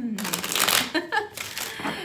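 A tarot deck being shuffled by hand, a papery rustle of cards in the first second and again near the end, with the tail of a woman's voice at the start and a brief vocal sound about a second in.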